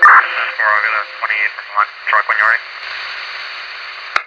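A voice coming over a two-way radio, thin and hissy, for about two and a half seconds, then steady radio static.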